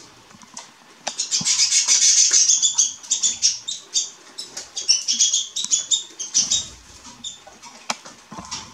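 Canary singing: a fast run of high trills and chirps that starts about a second in, is loudest in the first couple of seconds, then goes on in shorter phrases and dies away near the end.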